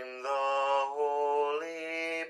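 A man singing a slow hymn melody in long held notes, stepping from one pitch to the next.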